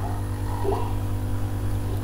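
Steady low background hum with a few faint steady tones above it, in a pause between speech.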